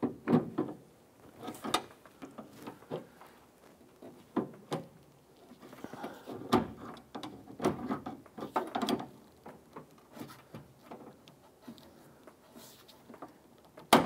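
Irregular light clicks and short metallic rattles as a door handle release rod and its plastic clip are worked with a pick and pulled free inside a Honda Civic's front door shell, with a sharper click near the end.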